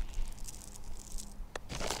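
Faint rustling of a bag of granular soil acidifier being handled and dipped into by a gloved hand, with one sharp click about one and a half seconds in.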